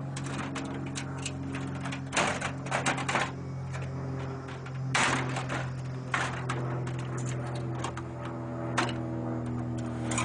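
A Foldit folding dock cart of stainless steel, aluminium and plastic being folded down by hand: a run of clicks, clacks and rattles from its frame and latches, busiest about two to three seconds in and again around five seconds, with a single sharp click near the end. A steady low hum runs underneath.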